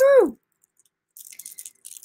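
A short spoken "woohoo", then after a pause faint, irregular clicking and rustling of beads on a cord being handled, from a little over a second in.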